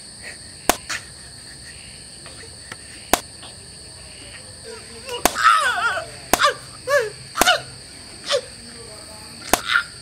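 Steady high chirring of night insects, crickets, with sharp clicks here and there. From about halfway on, a run of six or so short, harsh voiced cries breaks in.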